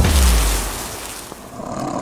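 Logo-intro sound effect: a deep boom with a rushing, fiery hiss that fades away over about two seconds.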